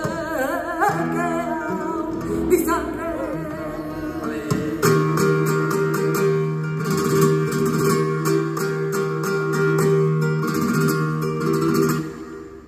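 Live flamenco seguiriya: a female singer draws out a wavering melismatic phrase over acoustic flamenco guitar. From about five seconds in the guitar takes over, strumming a chord in steady repeated strokes.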